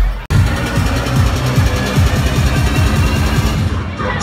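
Riddim dubstep played loud over a club sound system, with a dense, stuttering bass line in a fast rhythm. The sound cuts out for a moment just after the start, then the music carries on.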